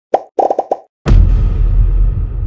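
Video-editing sound effects: a rapid series of short cartoon pops as caption boxes appear, then about a second in a sudden, loud, deep booming hit that keeps rumbling.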